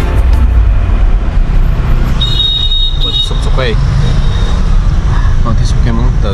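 Car interior noise while driving in traffic: a steady low engine and road rumble, with a steady high tone for about a second two seconds in and brief bits of voice in the second half.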